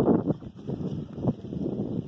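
Wind buffeting the phone's microphone: an irregular rushing noise that swells and dips, loudest at the very start.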